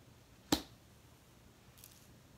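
A single sharp click about half a second in, with a faint high rustle near the end, in a quiet small room.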